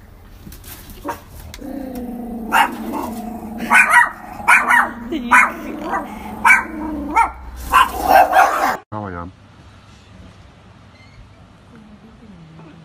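Small dogs barking: a run of sharp barks over a steady pitched growl, loudest in the second half, that cuts off suddenly about nine seconds in. After that only a faint outdoor background remains.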